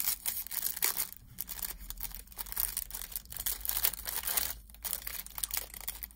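Clear plastic packaging crinkling and rustling as gloved hands unwrap a small roll of nail transfer foil from its bag. The crackle is irregular and goes on without a break.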